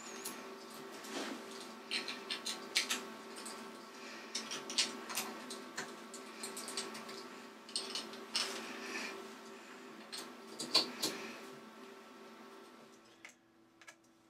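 Small metallic clicks and taps of a hex key and steel parts being handled while the compound slide of a Boxford lathe is unscrewed, irregular and scattered, over a faint steady hum. The sound drops out briefly near the end.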